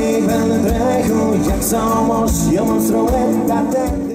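Live folk band playing a song: singing over acoustic guitar, bass and drums with a steady beat.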